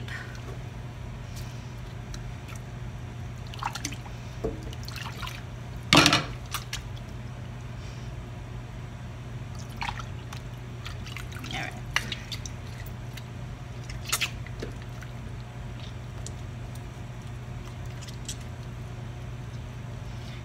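Whey dripping and splashing into a pot as mozzarella curd is dipped in it and shaped by hand, in scattered small splashes with a louder splash about six seconds in.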